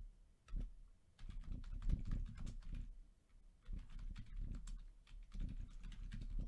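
Typing on a computer keyboard: irregular runs of key clicks with soft thumps, pausing briefly about halfway through.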